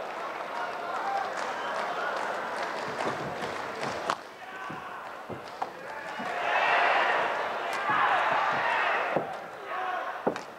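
A badminton rally, with sharp racket strikes on the shuttlecock roughly once a second over a murmuring arena crowd. The crowd noise swells loudly about six and a half seconds in and again around eight seconds as the match-point rally goes on.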